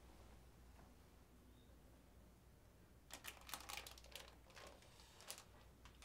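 A plastic sweet packet crinkling faintly as it is picked up and handled: a run of small crackles about halfway through, after a few seconds of near silence.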